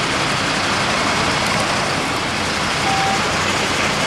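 Steady urban road traffic noise, an even rushing wash with no distinct events, and one short single tone about three seconds in.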